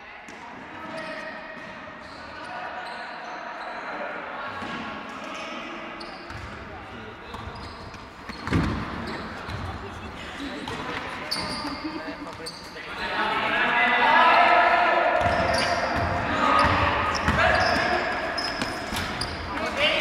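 Basketball game in a large, echoing gym: players' and spectators' voices calling out across the hall, louder in the second half, over the ball bouncing on the court, with one loud thud about eight and a half seconds in.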